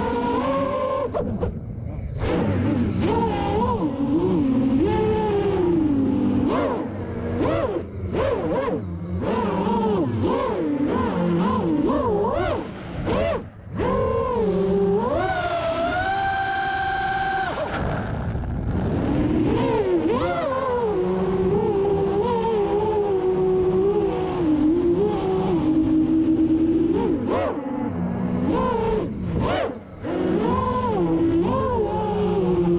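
FPV racing quadcopter's brushless motors and propellers whining in flight, the pitch constantly rising and falling with the throttle. Just after a third of the way in the sound briefly drops, then it holds one steady pitch for about two seconds before the swings resume.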